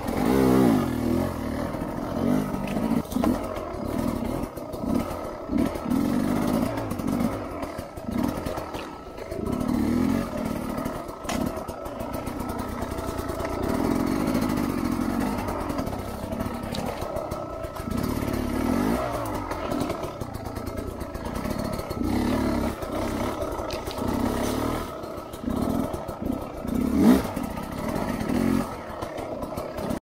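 Sherco 250 dirt bike engine ridden at low speed on a rough trail, revving up and down in short throttle blips, with occasional knocks.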